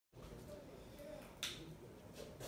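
A single sharp click about one and a half seconds in, over faint room noise.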